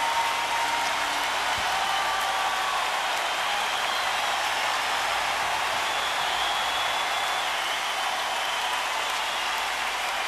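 Large concert-hall audience applauding steadily, with a few faint thin tones over the clapping.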